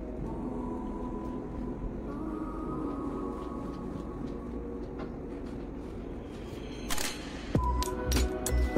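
Soft background music with sustained tones. About seven seconds in, a brief swish and a falling tone lead into a steady low beat.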